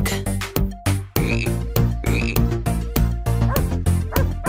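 Cartoon frog croak sound effects over a chant backing track with a steady beat: two croaks, about a second and a half and two and a quarter seconds in.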